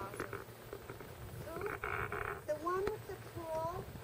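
A person's voice making short, indistinct sounds that glide up and down in pitch in the second half, after a brief burst of hiss about halfway through.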